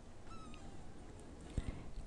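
Quiet room tone with one faint, short high-pitched call, falling slightly in pitch and lasting under half a second, followed by a soft click near the end.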